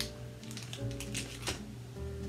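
Background music with held notes, over a run of sharp crinkles and crackles in the first second and a half: a plastic candy wrapper being handled.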